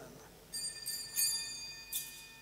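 Small altar bells rung at the elevation of the chalice after the consecration. A few sharp strikes from about half a second in leave high, bright ringing tones hanging between them.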